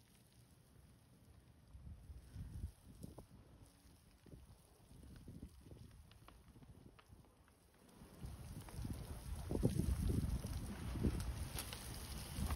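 A large woodpile fire burning, with a few sharp pops and crackles, while a garden hose sprays water onto it. A gusting low rumble of wind on the microphone runs under it and grows louder about eight seconds in.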